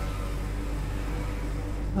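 Steady low electrical hum with a faint hiss from the recording chain, heard in a pause between words.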